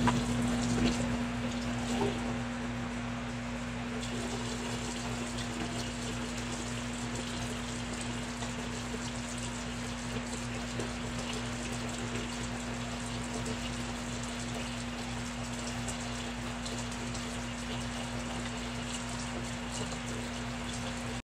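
Water from a tap running steadily into a sink, with a steady low hum under it.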